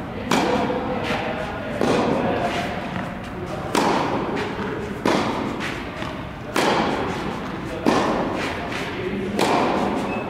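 Tennis ball struck by rackets in a rally, about seven sharp hits spaced a second and a half or so apart. Each hit rings on in the echo of a large indoor tennis hall.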